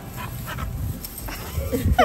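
Two dogs playing, with rustling and short, high dog vocal sounds near the end.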